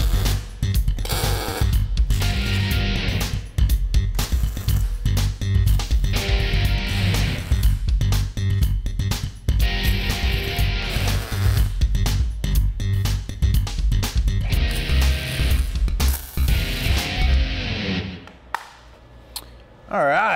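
Guitar-backed music with a steady beat, over which a MIG welder's arc crackles in several short bursts of a second or two as tacks and stitch beads are laid on steel tubing. The music drops away near the end.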